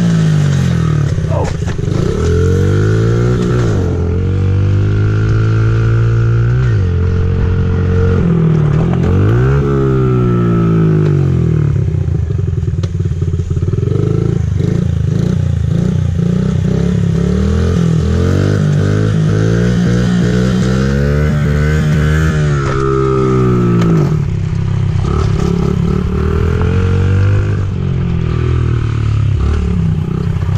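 A small dirt bike's engine running under way, its pitch climbing and dropping back several times as the throttle is opened and closed.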